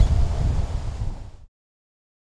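Wind buffeting an outdoor microphone: a rough, low rumble with a hiss above it. It cuts off suddenly about one and a half seconds in.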